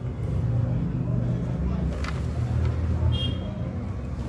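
Steady low background rumble, with a few faint clicks and a brief high tone about three seconds in.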